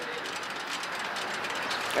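Steady outdoor background noise, an even hiss with nothing distinct standing out.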